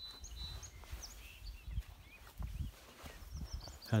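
Quiet outdoor background with a low rumble and a few faint, high bird chirps, near the start and again about three seconds in.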